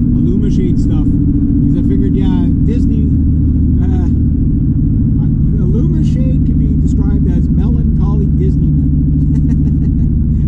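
Inside the cabin of an early-2000s Honda Civic driving on a road: the engine and the tyres on the road make a steady, loud drone.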